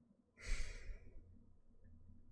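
A woman's single short sigh, a breathy exhale lasting under a second, starting about half a second in.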